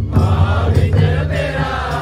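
A large mixed group of men and women singing a song together, accompanied by a steady beat on barrel-shaped and kettle-shaped folk hand drums.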